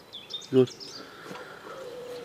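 A man says a single short word. Around it there is only faint background noise, with a few faint high chirps.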